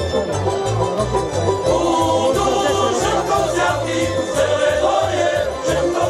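Male folk choir singing a Rusyn folk song in several voices over an instrumental accompaniment with a steady bass beat of about three a second.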